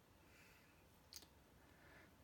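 Near silence: room tone, with one short, faint click a little over a second in.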